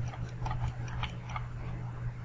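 Computer mouse clicks and scroll-wheel ticks, about five or six short irregular ticks, over a steady low hum.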